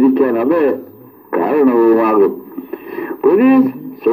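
A man speaking to the camera; only speech.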